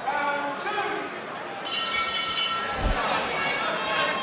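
Boxing ring bell rung about halfway through, a steady metallic ring that fades over a second or two, signalling the start of the round. A voice calls out just before it.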